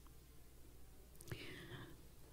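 Near silence with a faint low hum: a pause in a woman's speech, with a soft whisper-like sound from her voice in the second half.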